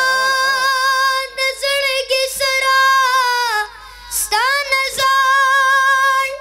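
A boy singing a Pashto naat into a microphone in long, high, held notes with quavering ornaments, and a short pause for breath a little before four seconds in.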